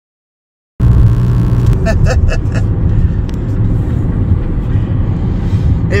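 Car driving, heard from inside the cabin: a loud, steady low rumble of road and engine noise that cuts in abruptly just under a second in.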